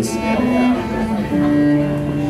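Solo cello bowed in long held notes, with a short slide early on and a lower double note coming in about a second and a half in, played as a soundcheck while the stage monitor level is turned up.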